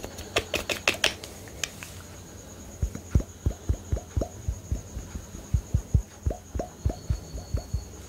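Fingernail clicks and taps on a makeup foundation bottle's cap. About three seconds in, a run of hollow low thumps follows, roughly three a second, as the bottle is shaken in the hands.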